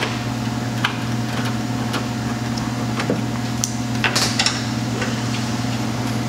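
Scattered sharp plastic clicks and knocks, about eight of them, as a headlight assembly is worked back into its mounting in the front of the truck, over a steady low hum.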